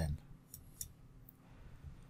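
A few faint computer mouse clicks in the first second, over low steady room noise.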